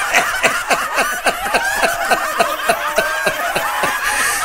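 Laughter from several people at once, a steady run of short falling 'ha' sounds overlapping one another.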